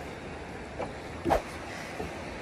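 Steady outdoor background noise of river flow and wind on the microphone, with a brief knock just past the middle.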